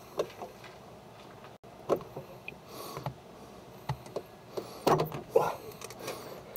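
Quiet, scattered clicks and scrapes of a steel clutch-pedal spring and long-nose pliers as the spring is worked into its top-hat washers on the pedal box, with a few more clicks close together near the end.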